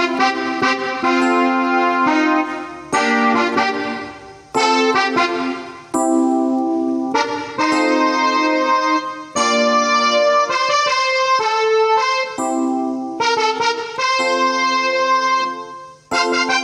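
Electronic arranger keyboard playing the song's intro as block chords in the key of F. Each chord is struck and left to ring for about a second before the next, with brief dips in between.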